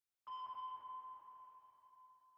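A single ping sound effect: one clear ringing tone that strikes suddenly about a quarter second in and slowly fades away.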